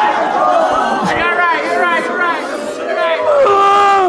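Several voices of people gathered close, chattering, laughing and crying out without clear words, with a man's long, held cry near the end, from a man who has just been dropped by a body punch and is lying on the floor in pain.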